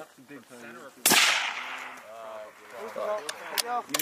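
A single bolt-action sniper rifle shot about a second in: a sharp crack with an echo that dies away over about a second. Near the end come sharp metallic clicks as the bolt is worked to chamber the next round.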